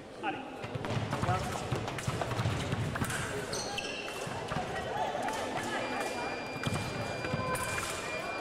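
Sabre fencers' feet thudding and stamping on the piste as they advance and lunge, with blade clatter. About six seconds in, the electronic scoring machine sounds a steady beep as a touch is registered.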